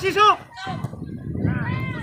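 High-pitched shouting voices of players or spectators calling out during a football match: one loud, short call at the very start, then fainter calls near the end over a low, noisy rumble.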